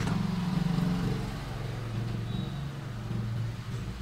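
A steady low engine-like hum, fading slightly toward the end.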